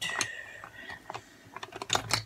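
Zip of a makeup bag being drawn open, a fine run of clicking teeth for about a second, followed by several sharp separate clicks of cosmetics handled inside the bag.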